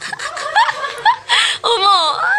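A woman laughing in quick, high-pitched bursts of giggles, with a few longer laughs that fall in pitch toward the end.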